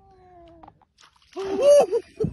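An animal calling: faint falling tones at first, then a loud drawn-out call that rises and falls in pitch about one and a half seconds in.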